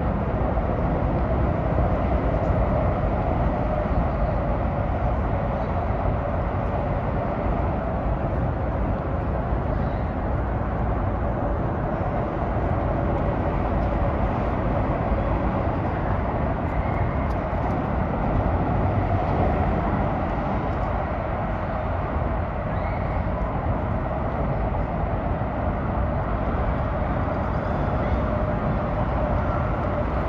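Steady, loud traffic noise from an elevated highway, an even roar with no breaks.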